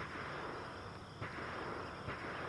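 Faint, steady background hiss of outdoor ambience, with no distinct mechanical click.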